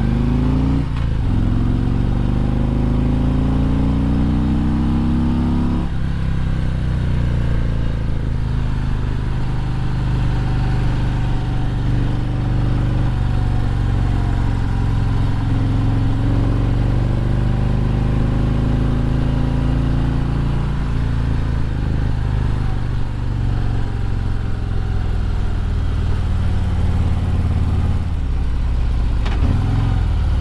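Harley-Davidson Road Glide's V-twin engine heard from onboard while riding, revs climbing through the first few seconds, then dropping suddenly near six seconds as the gear changes or the throttle closes. It then runs at varying throttle through the bends, falls off in revs near the end and picks up again just before the close.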